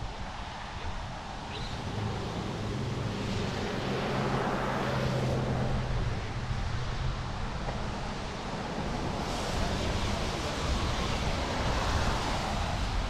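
Wind rushing over an action camera's microphone, with the low steady hum of a vehicle from passing traffic through the first half or so.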